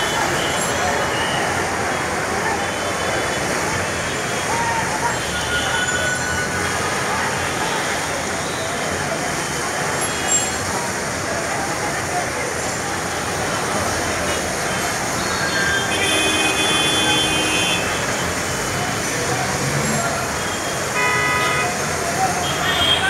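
Dense city road traffic heard from above: a steady rush of engines and tyres, with car and bus horns tooting, a longer blast about sixteen seconds in and a short one near the end, over a murmur of distant voices.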